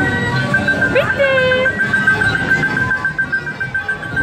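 Kiddie carousel's electronic ride music: a tinny jingle with a high note pulsing evenly throughout. A short voice call rises and holds about a second in.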